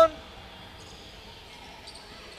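Faint, steady background noise of a gymnasium during a basketball game, with no distinct ball bounces or shouts standing out.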